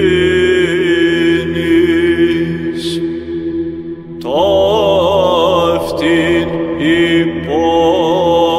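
Chant: a slow sung melody over a steady held drone. The melody breaks off about three seconds in, and a new phrase begins with an upward slide about a second later.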